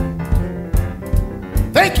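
A live blues band vamping with a steady drum beat and sustained chords, and a man's voice starts speaking near the end.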